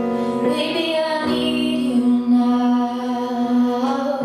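Live band playing a song, with held notes from keyboard and strings over guitar, and a woman singing.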